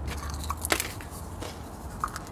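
Small plastic plant pots being handled and gritty potting mix scooped by hand, with a few faint crunches and clicks over a low hum.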